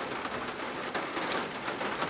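Rain falling on a car, heard from inside the cabin: a steady hiss with a few faint ticks of drops.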